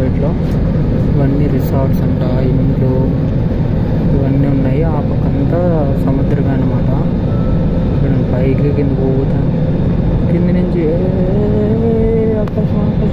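Steady drone of a jet airliner cabin on descent, engine and airflow noise heard from a window seat over the wing, with voices in the cabin rising and falling over it.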